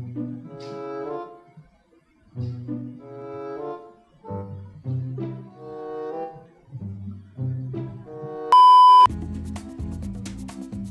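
Background music of low bowed strings playing short phrases, cut near the end by one loud, steady high beep lasting about half a second. A different piece with a steady beat follows the beep.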